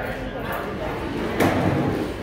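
Indistinct background chatter of people talking, with a single sharp knock about one and a half seconds in.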